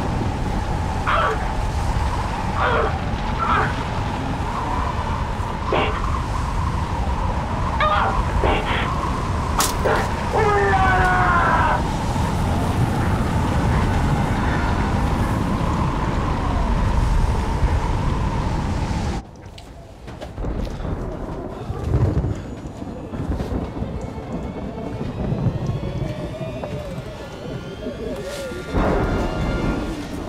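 Film sound of a sandstorm: dense, loud wind rumble with a steady high tone over it and a man's short strained grunts. It cuts off abruptly about two-thirds of the way through, giving way to quieter background music with a low thud.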